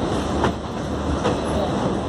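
Passenger train wheels rolling over rail joints and points, heard through an open coach door, with a steady rumble of running noise and two sharp knocks from the wheels about half a second in and just past a second.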